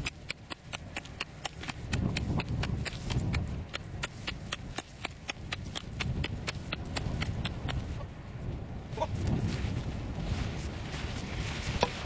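A Fiskars axe chopping rapidly into frozen lake ice, about four sharp blows a second, with wind rumbling on the microphone. This is an ice-thickness test, and the ice is not very thick. The chopping stops about eight seconds in.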